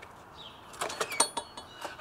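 A front door being unlocked and opened: a quick, irregular run of metallic clicks and rattles from the lock and latch, the sharpest about a second in, with a small click near the end.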